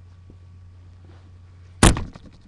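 A steady low hum, then shortly before the end one sudden, loud thump as the camera is bumped.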